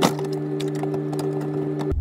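A single sharp crack at the start as a microwave is shoved hard into a tight cabinet opening, the casing and cabinet edge straining against each other, followed by a few faint creaks over a steady low hum.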